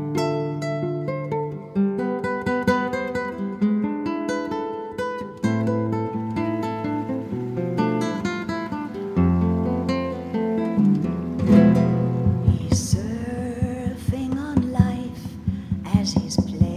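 Acoustic guitar music, fingerpicked notes and chords running steadily. About three quarters of the way in, the music changes to a different passage with wavering, sliding tones.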